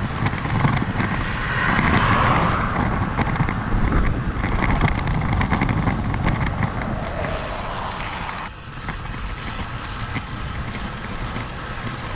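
Wind rushing over the microphone of a bike-mounted action camera, with road noise as a road bicycle rides along. The noise swells about two seconds in and drops suddenly past the eight-second mark.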